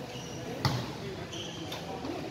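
A basketball bouncing twice on a hard court floor, about a second apart, with the first bounce the louder, over faint background voices.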